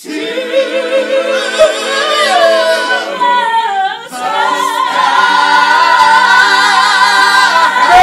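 Gospel choir singing, holding long chords: one phrase for about four seconds, a short break, then a second long chord held to the end.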